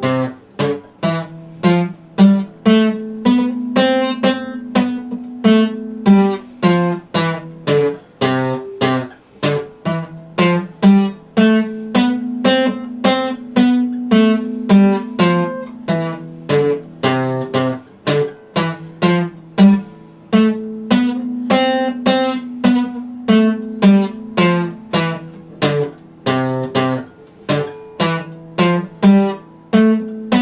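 Epiphone dreadnought acoustic guitar strummed in a steady rhythm, about two strokes a second, the chords changing every few seconds.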